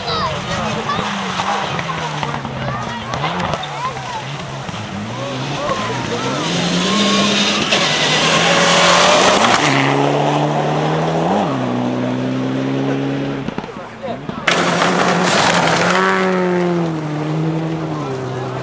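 Rally car engine accelerating hard, its pitch climbing and then dropping at each gear change, loudest about halfway through. A sudden loud rush of noise comes near the end, followed by the engine note falling away.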